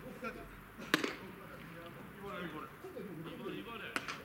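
A pitched baseball smacking into the catcher's mitt with one sharp crack about a second in, with a second sharp smack of a ball being caught near the end. Players' voices call faintly throughout.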